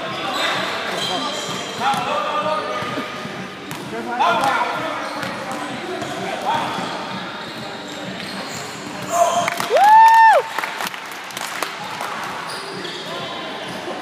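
Basketball game audio: a basketball bouncing on the court under a steady murmur of crowd voices, with a loud held tone lasting under a second, about ten seconds in.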